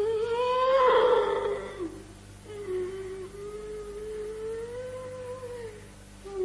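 A woman wailing in anguish: two long, drawn-out cries. The first rises and then sinks away before it breaks off about two seconds in; after a short pause the second is held more evenly until near the end.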